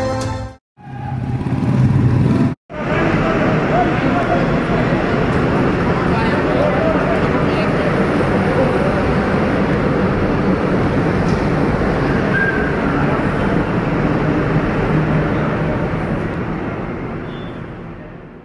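Vehicles driving slowly through a road tunnel: a steady wash of engine and tyre noise with onlookers' voices mixed in. The sound cuts out twice in the first three seconds and fades away near the end.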